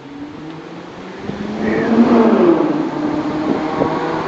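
A car engine running, growing louder over the first two seconds, its pitch rising and then falling, loudest about two seconds in.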